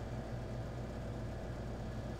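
Steady low hum of room tone, with no other event.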